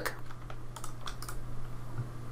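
A few light clicks from a computer mouse and keyboard as items are shift-clicked and right-clicked, over a low steady hum.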